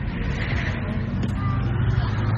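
Steady low rumble of engine and road noise heard from inside a moving car's cabin.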